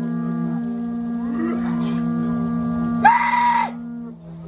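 A sustained, horn-like drone holds one steady pitch throughout. Over it, men's voices give a short rising cry about a second and a half in, then a loud, sharp shout near the end, the cries of a Māori warrior challenge.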